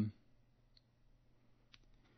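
A pause in speech: near silence with two faint, brief clicks about a second apart, just after the trailing end of a spoken "um".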